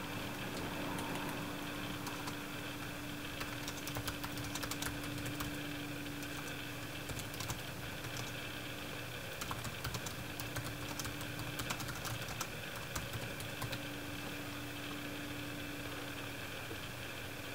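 Computer keyboard being typed on, keystrokes clicking in bursts with short pauses between them.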